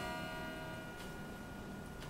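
Acoustic guitar E minor chord ringing out softly after a single strum, its notes slowly fading, with a faint tap about a second in.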